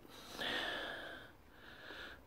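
A man breathing close to the microphone: one soft breath about half a second in, then a fainter one near the end.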